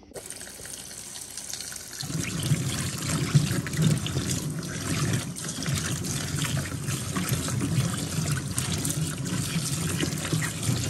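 Kitchen tap running into a stainless steel sink full of peppers while a hand swishes and rubs them in the water. The splashing gets louder about two seconds in.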